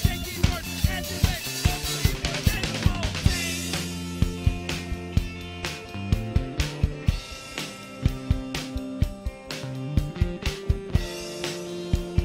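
A small indie rock band playing an instrumental passage live. A drum kit keeps a steady beat of kick and snare under sustained electric bass and electric guitar notes, with a brighter cymbal-heavy stretch about three seconds in.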